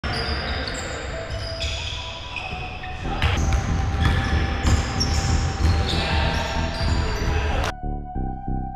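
Live sound of a pickup basketball game on a hardwood gym court: a basketball bouncing and players' voices, echoing in the hall and louder from about three seconds in. Near the end it cuts off abruptly and music with a steady pulse takes over.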